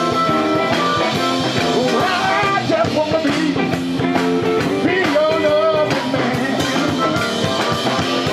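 Live rock band playing: Stratocaster-style electric guitar, electric bass guitar and a Pearl drum kit, continuous and loud.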